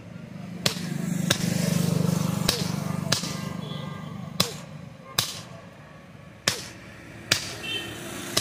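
Hammer blows on a red-hot axe head held on an anvil, about eight sharp metallic strikes at uneven spacing roughly a second apart, each ringing briefly. A low hum swells and fades under the first half.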